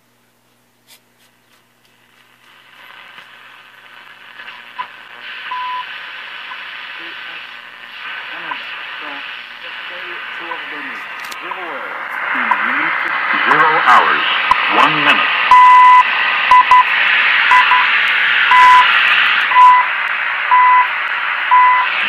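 Shortwave reception from a 1937 Philco 37-640 radio, played through its bare, unmounted speaker. After about two seconds of near silence, static hiss builds, with wavering whistles as the station is tuned in. Then a time-signal station's steady 1 kHz beeps come through about once a second, the second pips of CHU Canada.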